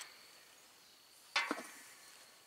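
Faint steady high-pitched insect chirring, with one short sharp handling sound about one and a half seconds in as the float gauge dial is lifted off its housing on a propane tank.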